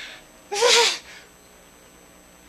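A man's heavy sigh: one breathy exhale with a little voice in it, about half a second long, starting about half a second in.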